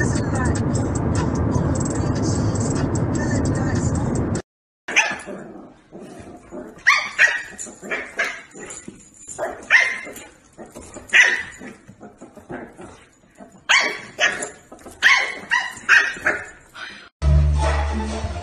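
A few seconds of steady dense sound that cuts off abruptly, then a puppy barking and yipping in short repeated calls, about one or two a second, with quiet gaps between.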